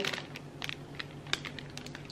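A clear plastic bag of styrofoam ornament balls crinkling as it is handled, giving faint irregular clicks and ticks, a few a little louder.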